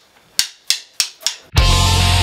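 A drummer's count-in: four quick drumstick clicks, about three a second. Then, about one and a half seconds in, the full rock band comes in at once and loud, with distorted electric guitar, bass and drum kit.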